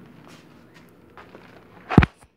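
Faint crinkling and shuffling as a bag of cat food is handled, then a single loud, sharp smack just before the end.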